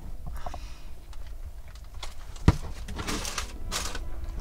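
Small handling noises at a table: a single sharp knock about two and a half seconds in, followed by about a second of rustling.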